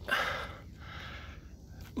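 A heavy breath from a hiker winded by a hard climb in heat, loud and lasting about half a second, then a faint steady outdoor hiss.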